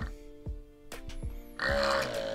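The pump of a Xiaomi X1 automatic foaming soap dispenser buzzing briefly near the end as it dispenses foam into a hand. Background music with a steady beat plays throughout.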